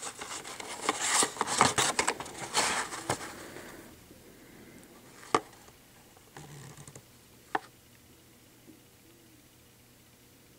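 Hot Wheels blister packs, cardboard backing cards with clear plastic bubbles, handled in the hand: rubbing and scraping for the first few seconds, then two sharp clicks a couple of seconds apart as the handling dies down.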